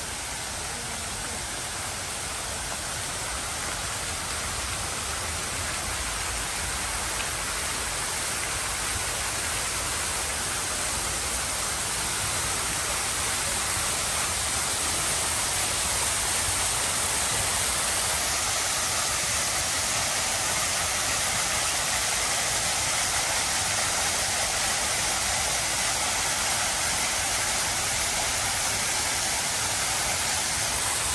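Fountain water jets splashing into a basin: a steady rushing spray that grows louder over the first half and then holds even.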